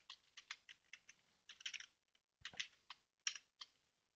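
Computer keyboard being typed on, faint: short runs of key clicks with brief pauses between them as a password is entered.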